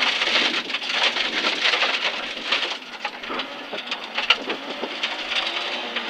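Rally car heard from inside the cabin at speed on a gravel road: a dense hiss of tyre noise with loose gravel and stones rattling against the underbody. The noise is loudest for the first few seconds, then eases.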